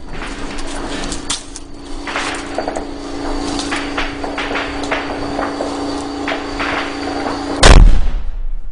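A T-64BV tank's 125 mm main gun firing once near the end: a single very loud, abrupt blast, by far the loudest sound here. Before it, a steady hum runs under scattered sharp cracks.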